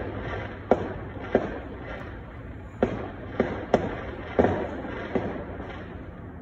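Fireworks going off in the neighbourhood: about eight sharp, irregularly spaced bangs and pops, each with a short echo, over a steady background hiss.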